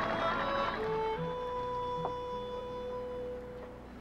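Soundtrack music with long held notes that step in pitch about a second in, then fade toward the end.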